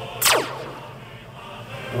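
Time-travel sound effect: a quick zap that sweeps steeply down in pitch about a quarter second in, followed by a faint held tone.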